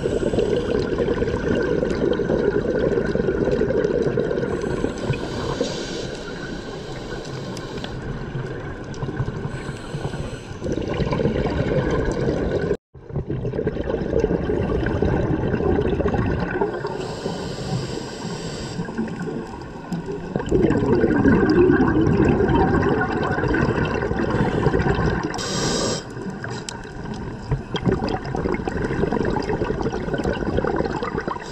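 Scuba diving heard underwater through the camera housing: exhaled bubbles gurgling and rushing past in swelling bursts, with short hissing breaths from the regulator every several seconds. The sound drops out for a moment about halfway through.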